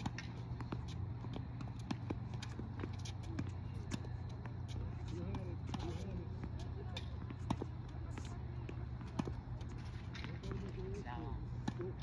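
Tennis balls being struck with rackets and bouncing on a hard court during a ball-feeding drill: a series of short sharp pops. Voices talk faintly in places.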